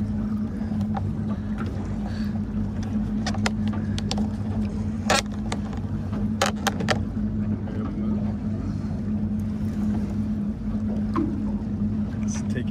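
Boat motor running steadily at idle, a low even hum, with a few sharp clicks or knocks on top, the loudest about five seconds in.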